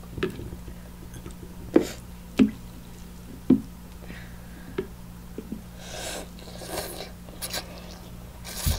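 A person eating instant noodles close to the microphone: a few sharp mouth clicks and smacks in the first five seconds, then noodles slurped up in hissing bursts near the end, over a steady low hum.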